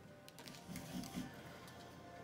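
Tarot cards being handled and shuffled, faint scattered clicks and rustles of card stock, over soft steady background music.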